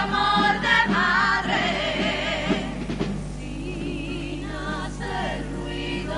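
A women's carnival comparsa choir singing in several-part harmony with wide vibrato; the sound is fuller in the first half and thins after about three seconds.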